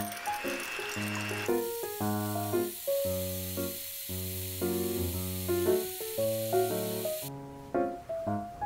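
Electric hand mixer whipping an egg white into meringue in a glass bowl: a steady high whirring hiss that cuts off abruptly about seven seconds in. Light piano background music plays throughout.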